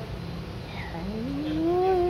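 A man's voice begins a sung call-to-prayer (adhan) phrase about halfway through: one long note that slides upward in pitch and then holds steady.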